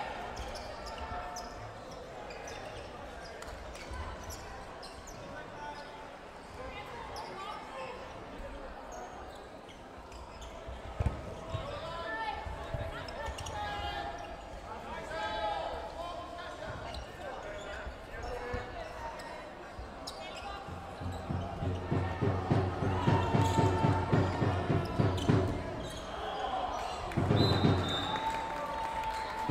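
Cloth dodgeballs bouncing and striking the wooden floor of a large sports hall, with players' voices calling in the hall. About three-quarters of the way through, a steady thumping beat of about four strokes a second comes in and gets louder.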